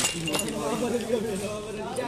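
A sharp clink of tableware at the very start, then a lighter one with a brief ring about a third of a second later, over conversation.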